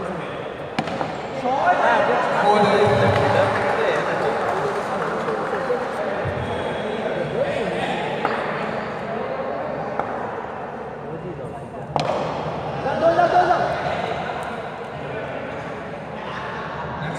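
Players' voices and shouts echoing in an indoor sports hall during an underarm cricket game, with a sharp knock about twelve seconds in, followed by a short burst of louder shouting.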